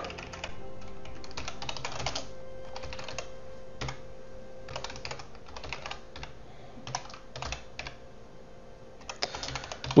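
Computer keyboard being typed on: keystrokes clicking in irregular runs with short pauses between them.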